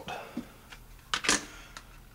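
A few hard plastic clicks and taps as Kydex holster and nylon belt-clip parts are handled, with two sharp clicks a little past a second in.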